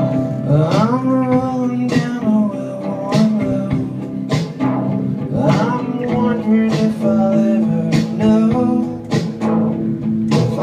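Live music: an acoustic guitar strummed steadily, with a sliding, held sung melody over it.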